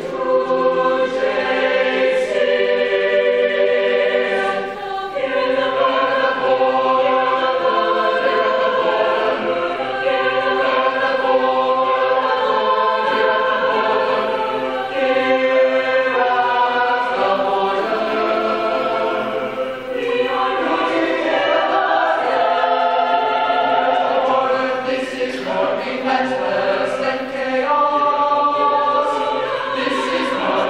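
High school mixed-voice chamber choir singing a choral piece in parts, sustained phrases with brief breaths between them about five seconds in and again near twenty seconds.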